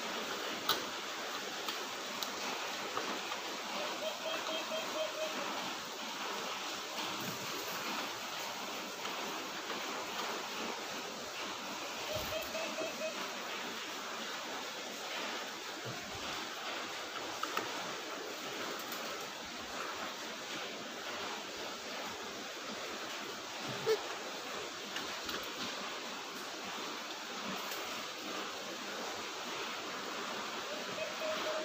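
Steady hiss of heavy rain, described as noisy, with a few faint clicks over it.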